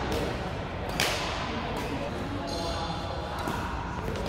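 Badminton rackets hitting a shuttlecock in a rally, sharp cracking hits with the loudest about a second in and another about three and a half seconds in, echoing in a large hall. A short high squeak sounds in the second half, typical of court shoes on the floor.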